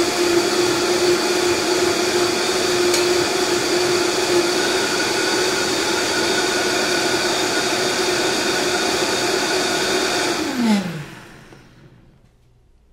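Countertop blender motor running steadily at high speed, puréeing a hot sweet pea and basil sauce. About ten and a half seconds in, it is switched off and spins down with a falling whine.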